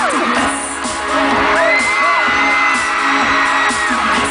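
Loud intro music with a steady beat played over a concert PA, recorded from the audience, with fans screaming over it and one long high scream held through most of the second half.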